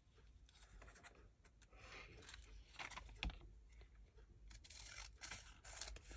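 Scissors cutting paper: faint, irregular snips and paper rustling, with one sharper click a little past the middle.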